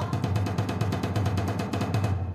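Rapid, even drum roll with a low sustained drone beneath it, marking the opening of a court session.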